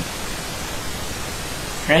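Steady, even hiss of background noise, the noise floor of a low-quality camera microphone, with no other event; a brief spoken word comes right at the end.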